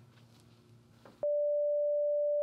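Near silence, then about a second in a steady single-pitch test tone starts abruptly and holds: the beep that goes with a colour-bars test pattern.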